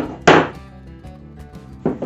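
A long steel drill bit set down on a wooden workbench top: one sharp knock about a quarter second in that rings briefly, then a lighter knock near the end.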